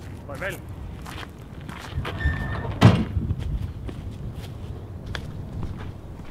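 Footsteps on gravel with scattered light crunches, and one loud heavy slam about three seconds in, like a car door being shut.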